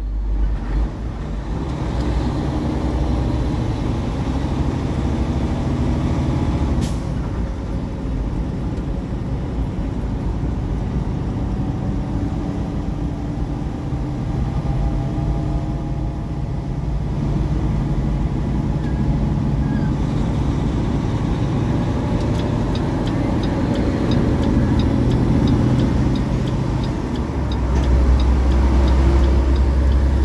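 Semi-truck's diesel engine running under load inside the cab as the tractor-trailer climbs an on-ramp, with a steady low hum and road noise. There is a brief sharp click about seven seconds in, faint regular ticking near the end, and the low rumble grows louder in the last couple of seconds.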